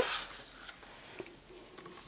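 Faint rustling of a bowl made of dried, glued autumn leaves as it is handled and set down, with a light tap about a second in.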